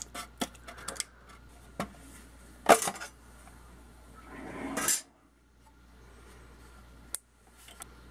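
Metal handling noise as the thin aluminium side cover comes off a Tektronix oscilloscope plug-in module. There are scattered small clicks and a sharp metallic snap about a third of the way in. A swelling scrape builds from about four seconds in and stops abruptly, and one more click comes near the end.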